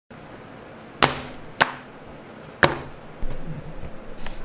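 Three sharp knocks, like a hard object set down or bumped on a wooden tabletop, the second about half a second after the first and the third a second later, followed by softer shuffling knocks near the end.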